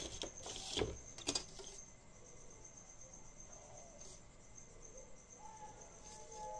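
Handling noise of drawing tools on paper: a few soft knocks and scratchy rustles in the first two seconds, then quiet room tone.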